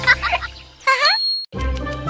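Cartoon sound effect: a short rising, warbling chime that ends on a held high ding, then a brief break. After it, the show's theme music starts with twinkling chimes.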